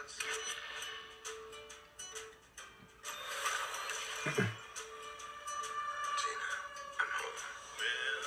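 Movie-trailer soundtrack playing back: a held music tone under a rapid run of small mechanical clicks for the first few seconds, then fuller music. A man laughs briefly about halfway through.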